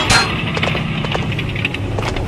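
Animated tank's engine sound effect running with a steady low rumble, a sharp clank right at the start and light mechanical clicks.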